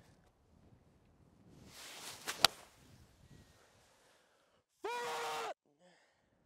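Golf swing with an eight iron off a tee: a short swelling whoosh ending in one sharp click as the clubface strikes the ball. A couple of seconds later a man gives one short, held, steady-pitched vocal sound.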